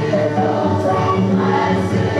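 A group of voices singing together in held notes over instrumental accompaniment.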